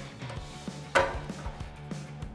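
A license plate light snapping into its hole in a steel bumper: one sharp snap about a second in with a short ring after it, over quiet background music.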